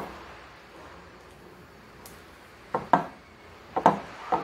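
A silicone spatula stirring cake batter in a glass mixing bowl, knocking sharply against the bowl a couple of times about three seconds in and again near the end.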